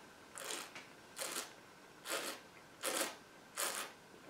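Five short, airy breath sounds, about one every three-quarters of a second, from a taster holding and working a mouthful of red wine.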